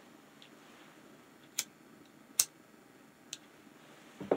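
Three short, sharp clicks, roughly a second apart with the middle one loudest, over quiet room tone.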